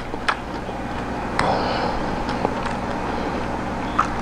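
A fork clicking against a plate a few times as it cuts into a waffle, over a steady low hum.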